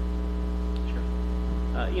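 Steady electrical mains hum in the audio feed: a constant low buzz with a ladder of higher overtones. A man starts to speak near the end.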